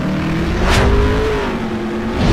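Sound effects from a like-and-share outro animation: a loud low rumble under a held tone that bends slowly up and back down, with a whoosh sweeping past about three-quarters of a second in.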